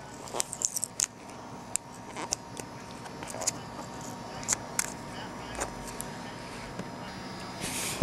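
Hands handling plastic card holders and mail packaging: scattered irregular clicks and crinkles over a faint steady hum.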